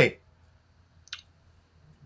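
A pause in conversation with a faint low hum, broken by one short, sharp click about a second in.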